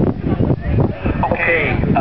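Strong wind buffeting the microphone, giving a loud uneven rumble, with voices heard faintly through it.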